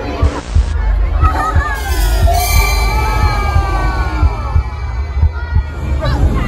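A dinosaur exhibition soundtrack over crowd hubbub: music over a low pulsing thump, with a short hiss about half a second in and long sliding, falling tones through the middle.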